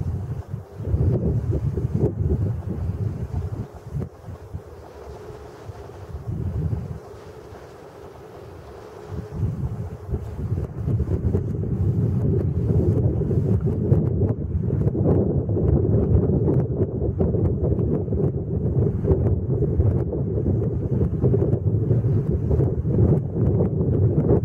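Wind buffeting the microphone in gusts, a rough low rumble. It eases off from about four to ten seconds in, then picks up again and stays strong.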